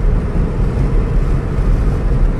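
Steady road and tyre noise inside a 10th-generation Honda Civic's cabin at highway cruising speed, a constant low rumble with an even hiss above it.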